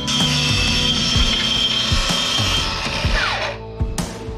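Bosch BITURBO GKT 18V-52 GC cordless plunge saw running on its guide rail and cutting through a pine board with a steady high whine. About three seconds in, the motor winds down with a falling pitch. Background rock music plays throughout.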